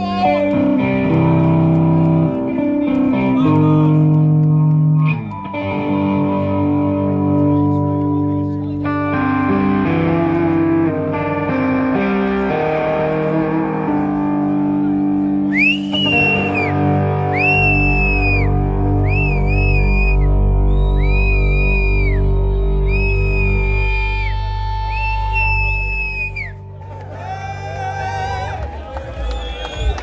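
Live rock band with distorted electric guitars and bass holding sustained chords. About halfway in, a lead line of repeated high notes joins, each bending up and falling away, and the music thins out near the end.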